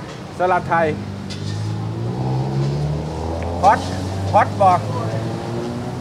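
A road vehicle's engine running close by for several seconds, a low steady hum that comes in about a second in and rises a little partway through.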